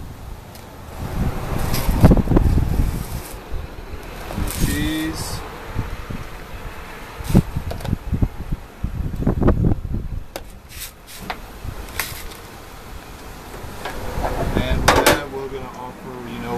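A serving spoon scraping and clicking against topping bowls and a paper tray as sour cream and shredded cheese are spooned onto a foil-wrapped baked potato, with a few sharp taps. A low rumble runs underneath, and a brief voice is heard twice.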